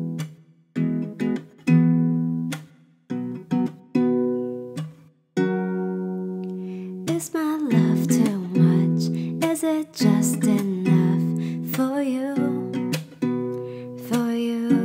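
Acoustic guitar strumming chords, each chord ringing out with short gaps between, then a woman's singing voice comes in over the guitar about halfway through.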